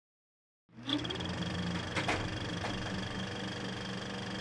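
A steady mechanical running hum with a thin high whine and a few faint clicks, starting out of silence just under a second in.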